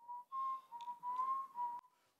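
A person whistling a few short held notes at about the same pitch, each a little higher or lower than the last; the whistling stops shortly before two seconds in.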